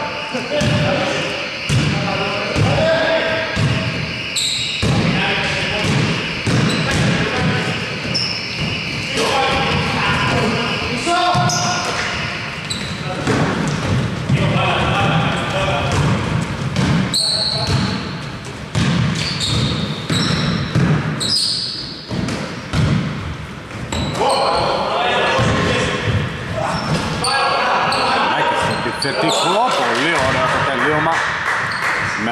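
Basketball being dribbled and bounced on a wooden gym floor during live play, with short high squeaks of sneakers and players' voices calling out, all echoing in a large hall.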